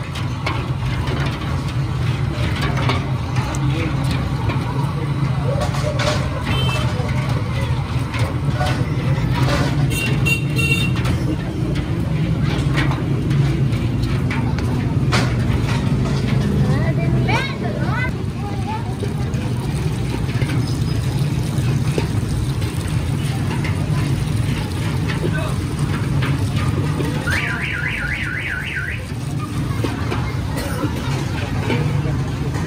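Brass and aluminium bowls of milk spun by hand in a steel tray of crushed ice and water, a steady grinding rumble of metal churning through ice with scattered clicks, chilling the milk for doodh soda.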